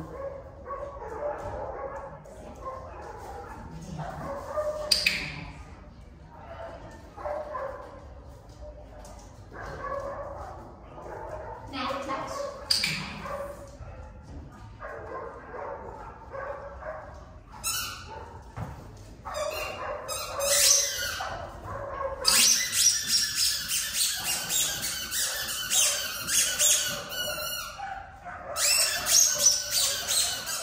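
A dog whining and giving short, high yips now and then, with a run of rapid clicking in the second half.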